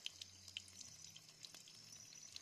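Near silence, with a faint trickle and a few soft drips of water in a small spring-fed pool.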